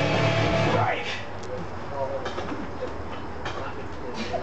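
Guitar-driven rock music playing, which drops away suddenly about a second in, leaving faint voices and a few light knocks.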